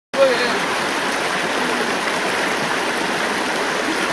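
Shallow rocky creek rushing over boulders: a steady, even wash of water noise.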